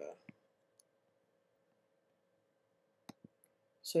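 Computer mouse clicks over a faint steady hum: a quick pair of sharp clicks a little after three seconds in, selecting a menu item.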